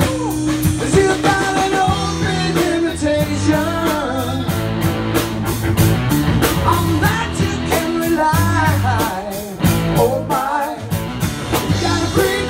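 Live rock band playing: two electric guitars, bass guitar and drum kit, with a wavering melodic line over steady drum strikes.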